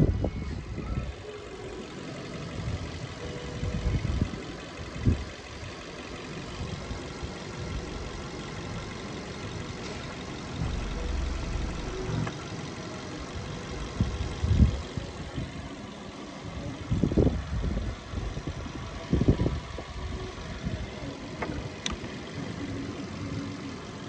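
Mazda 3's 1.6-litre petrol four-cylinder engine running at idle, heard under irregular low rumbles of wind and handling on the microphone, with a few light clicks.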